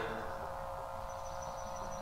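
Steady background hum of room tone in a pause in the talk, with a faint, thin high tone in the second half.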